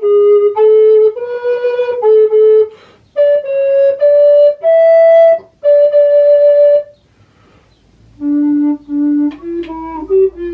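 Recorder playing a slow melody of held, clear notes. The phrase ends about seven seconds in, and after a second's pause a lower-pitched passage begins.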